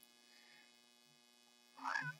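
Faint, steady electrical mains hum during a pause in speech. A brief voice sound from the speaker comes near the end.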